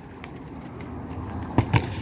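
Steady outdoor background noise, then about a second and a half in two sharp thuds close together: a football being kicked in a shot on the street.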